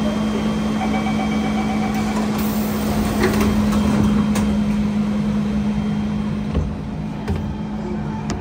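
Siemens C651 metro train standing at an underground platform with its doors open, its onboard equipment giving a steady low hum over the bustle of passengers boarding. Two short thumps come near the end.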